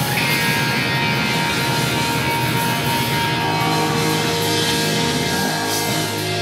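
Live hardcore punk band's distorted electric guitars holding steady, droning notes at the very start of a song, loud and even, with no clear drum beat.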